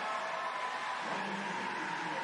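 Steady background noise of a busy show hall: an even, continuous wash with faint indistinct voices of spectators in it.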